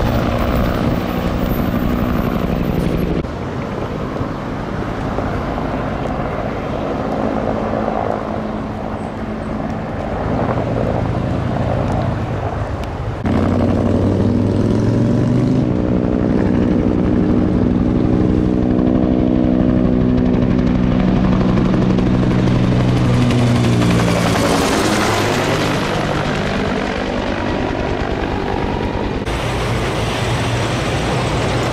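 A fire engine's diesel running as it drives off, then a helicopter's rotor and engine running steadily overhead, its sound swelling and falling in pitch as it passes near the end.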